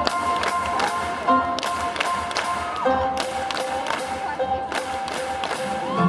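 Live band music in a concert hall: sustained keyboard chords under a steady sharp beat about twice a second.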